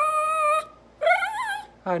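Small dog whining in long, high, wavering cries: one fading about half a second in, another about a second in, and a third starting near the end. The dog is begging for the bacon it is being offered.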